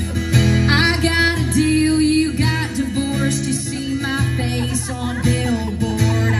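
Live country song played loud through a stage PA: acoustic guitar and a steady bass backing, with singing over it.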